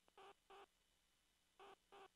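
Faint electronic beeps in pairs: two short, pitched beeps about a third of a second apart, the pair repeating about a second and a half later.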